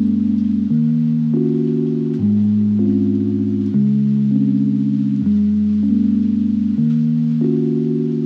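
Background music: sustained chords that change about every second, over a low bass note.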